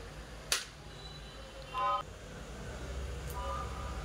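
A single sharp knock about half a second in, fitting a piece of fish set down in a clear plastic tray, over a low steady hum; two brief, faint high-pitched sounds follow.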